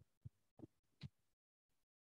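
Near silence, broken by three faint, short, soft knocks in the first half, then dead silence.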